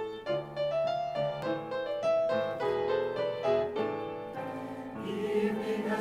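Piano introduction of a choral piece, a melody of separate, clearly struck notes. A large mixed choir starts singing with the piano about five seconds in.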